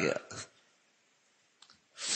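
A man's voice finishing a word, then near silence broken by one faint click about a second and a half in.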